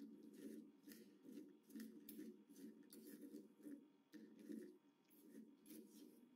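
Very faint, irregular scraping and clinking of a spoon stirring paste-coated cashew nuts in a steel bowl.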